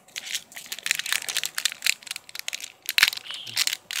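Foil wrapper of a Pokémon trading-card booster pack crinkling and tearing as it is pulled open by hand: a dense run of irregular crackles, with a sharper crack about three seconds in.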